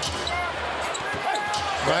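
Arena crowd noise during live basketball play under the basket, with short squeaks and thuds from the court.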